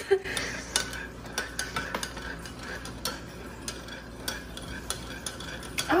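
A spoon stirring milk tea in a glass pitcher, clinking lightly and irregularly against the glass.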